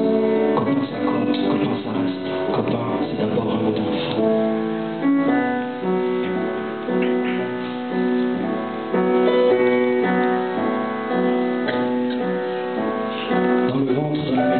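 Grand piano played live: a slow run of held chords and melody notes, changing about once a second.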